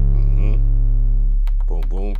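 Long 808 bass note synthesized on an Akai MPC One's Drum Synth plugin and run through its distortion: a deep sustained tone with buzzy overtones, slowly fading. About one and a half seconds in its upper layer drops away and a few clicks and a voice come in.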